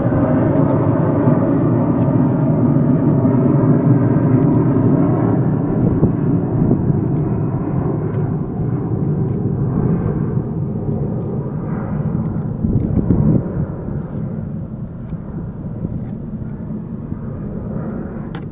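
A steady engine drone, loudest in the first few seconds, then slowly fading.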